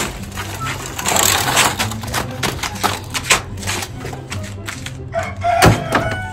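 Rapid, irregular plastic clicking and rattling from a child's push toy on a stick, its wheels and handle being worked, over background music with a steady low bass. A single harder knock near the end.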